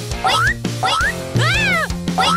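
Bouncy children's cartoon music with a cartoon animal voice over it, giving three short squeals that each rise and fall in pitch, the last and longest near the end.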